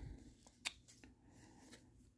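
Near silence with a few faint clicks of paper trading cards being thumbed through by hand, the clearest about two-thirds of a second in.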